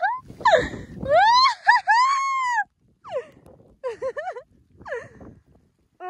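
A dog giving a string of high whining cries, each rising and then falling in pitch: several run close together for about a second and a half, then a few shorter ones follow.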